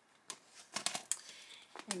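Clear plastic pocket-page protectors in a ring-bound scrapbook album crinkling and clicking as a page is lifted and turned. There are a few sharp crinkles, most of them bunched a little under a second in.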